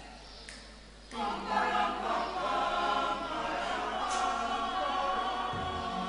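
Mixed church choir of men's and women's voices starting to sing a wedding song about a second in, then singing on steadily.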